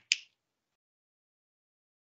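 Dead silence, after a brief sharp click-like sound right at the start.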